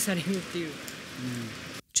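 Steady rain hiss, with a woman's voice talking quietly under it; the sound cuts off abruptly just before the end.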